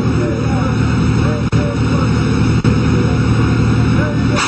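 Military truck engine running with a loud, steady rumble, the truck carrying a multiple rocket launcher, with faint voices in the background.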